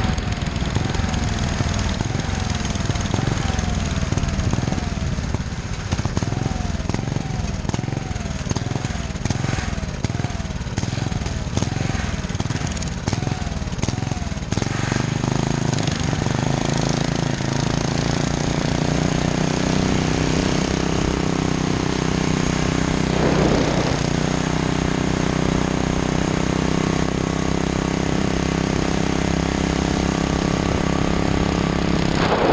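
A go bike's small single-cylinder engine running on the road, with wind noise on the microphone. For the first half its pitch rises and falls over and over, about once a second, as the throttle is worked. About halfway through it settles into a steady, higher drone under acceleration.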